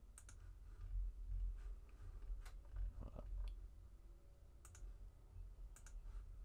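Computer mouse clicks, a handful of short sharp clicks scattered over several seconds, some in quick pairs, as a line is placed and snapped in CAD software. A faint low hum runs underneath.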